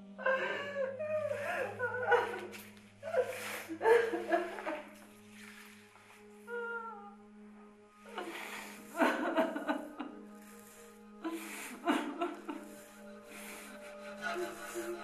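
A woman's wordless, breathy vocal outbursts in several bouts separated by pauses, over a low, steady drone of film-score music.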